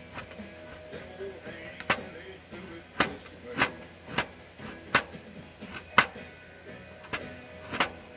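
Knife shaving curls down a fatwood stick, each stroke ending in a sharp tap as the blade meets the wooden board beneath; about nine taps, unevenly spaced, roughly one a second.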